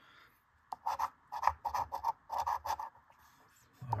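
A coin scratching the coating off a paper scratch-off lottery ticket: a run of short, quick scrapes, starting just under a second in.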